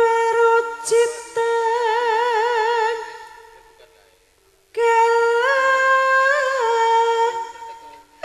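A high voice in Javanese sindhen style singing long held notes with a wavering vibrato, sliding between pitches, part of a tayub gending with fainter low accompaniment. The voice fades out about three seconds in and comes back strongly a second and a half later.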